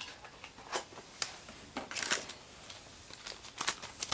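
Small cardboard toy box being opened by hand: scattered rustles and crinkles of card and plastic packaging, with a cluster of sharper ones about two seconds in and again near the end.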